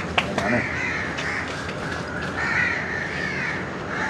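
Several crows cawing over one another without a break, with a couple of sharp clicks in the first half-second.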